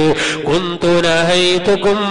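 A man's voice chanting in a melodic, drawn-out intonation, holding long steady notes with short breaks and slides between them.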